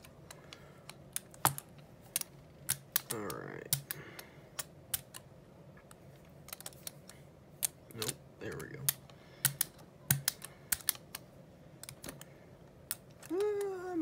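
Brayer rolling acrylic paint across a gel printing plate, the tacky paint giving an irregular run of sharp clicks and crackles.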